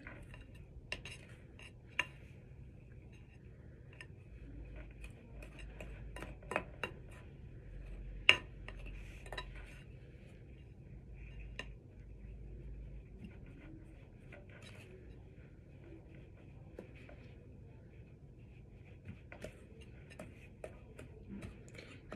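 Spoon stirring and folding a thick baking soda and shampoo slime mixture in a glass bowl, with scattered clinks of the spoon against the bowl, the sharpest about eight seconds in.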